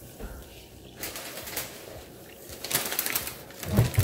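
Water pouring from a plastic bottle into a plastic bowl of ground wakame flakes, splashing and growing louder toward the end. Just before the end there is a short knock as the bottle is set down on the counter.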